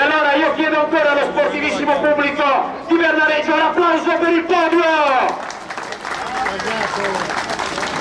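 A man's voice speaking for about five seconds, then crowd applause for the last few seconds.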